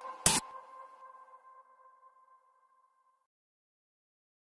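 Electronic soundtrack ending: a short burst of noise, then a single pitched tone that rings on and fades away over about three seconds into silence.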